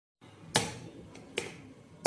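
A finger snap about half a second in, sharp and loud, followed by two fainter clicks.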